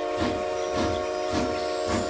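Cartoon steam-train sound effect: a held multi-note whistle chord over a steady chugging beat, a little under two chugs a second.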